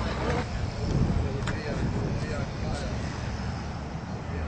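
Indistinct talking over a steady low rumble.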